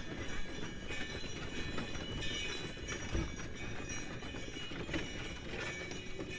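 Horse-drawn sleigh in motion over packed snow: a steady rumbling and rattling from the runners and the sleigh body as it travels.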